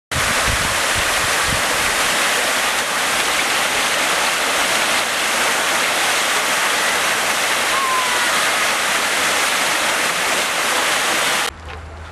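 Water fountain jet spraying: a loud, steady rush of falling water that cuts off suddenly near the end.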